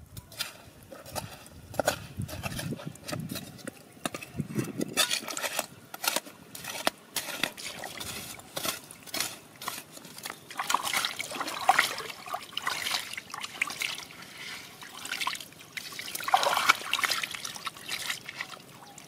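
Metal hand trowel scraping and digging into wet, stony mud, many short strokes, mixed with water splashing and trickling as the mud is scooped and rinsed.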